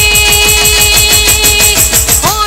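Instrumental break of live Gujarati folk dance music: a held keyboard note over a fast, even drum roll of about eight strokes a second with cymbal-like ticks on top, breaking off near the end.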